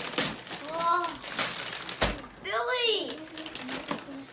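Two short rising-and-falling exclamations from a child's voice, with sharp clicks and knocks as a gift box of plastic toys is handled.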